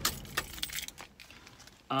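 Handling noise: a sharp click, then a scatter of lighter clicks and rattles as an arm moves close to the phone's microphone.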